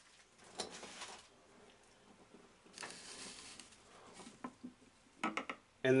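Faint handling of a clear plastic action-figure display stand: soft rustling and scattered light plastic clicks, with a quick run of clicks near the end as the jointed arm is stood upright.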